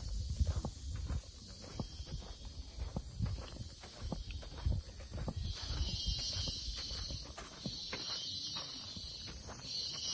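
Footsteps walking on a concrete path, with uneven low thumps and small scuffs. From about halfway in, a loud high-pitched insect buzz comes in long pulses of a second or two with short breaks.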